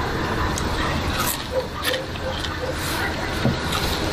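Indistinct voices over a steady background rumble like traffic, with a few brief clicks.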